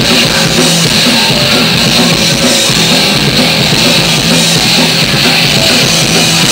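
Live rock band playing loudly and without a break: electric guitars, bass and drum kit.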